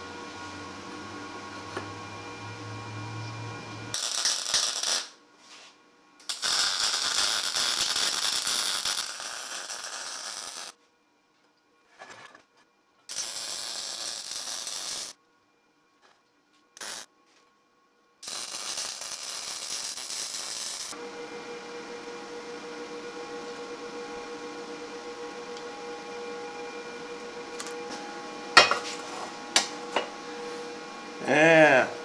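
MIG welder laying short welds: four bursts of arc crackle, each one to three seconds long, separated by silence, with a steady hum before and after and a clank near the end.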